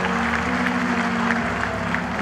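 Stadium crowd applauding after a goalkeeper's save, over background music of sustained low chords that change about halfway through.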